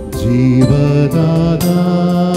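Electronic keyboard playing devotional song accompaniment with sustained chords and a programmed drum beat ticking along.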